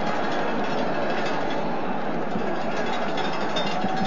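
Steady crowd noise from a football stadium, a continuous even roar of the spectators as carried on an old television broadcast's narrow sound.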